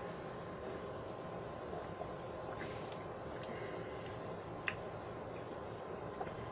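Faint sounds of a man drinking beer from a glass bottle, swallowing quietly over a steady low room hiss, with one short click about two thirds of the way through.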